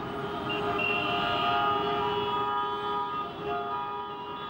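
Dense city road traffic with many vehicle horns honking at once: several steady horn tones at different pitches overlap over the rumble of engines.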